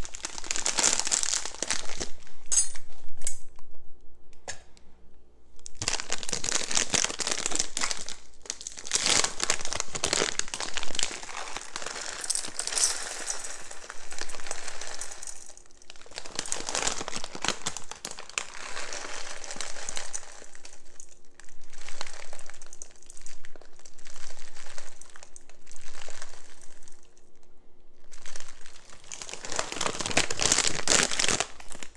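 Crinkling foil packaging being handled in repeated bursts, with short pauses between handfuls.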